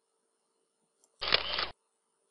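A single short slide-transition sound effect, about half a second long, a little over a second in, as the slideshow advances to the next slide.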